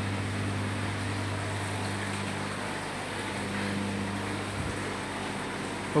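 Steady low machine hum over a soft hiss, the running drone of equipment in an aquarium hall. The deepest part of the hum fades out near the end.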